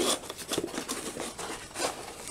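Soft rustling and scraping of small paper and plastic ration sachets being handled and set down on a wooden table, in irregular short bursts.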